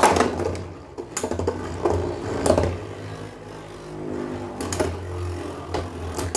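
Two Beyblade spinning tops, Meteo L-Drago and Galaxy Pegasus, whirring in a plastic stadium and clacking together several times. The first sharp clack comes about a second in; the player says this first collision cost Galaxy Pegasus nearly all of its spin.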